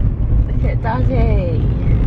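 Steady low rumble of a moving car heard from inside the cabin, with a brief high-pitched voice gliding down about half a second in.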